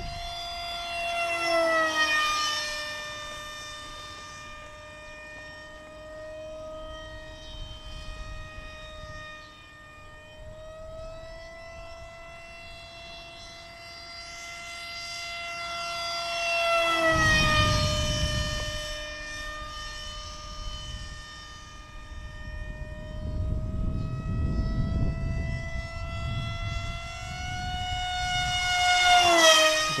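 Radio-controlled model airplane's motor running at a steady high whine as the plane makes three passes. Each pass grows louder and then drops in pitch as it goes by: about two seconds in, midway through, and near the end.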